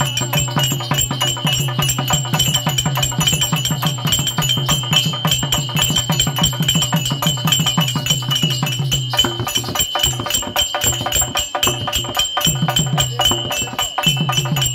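Live therukoothu folk music: fast, even hand-drum beats with jingling metal percussion over a steady low drone. The drone drops out for a few seconds near the end while the beats go on.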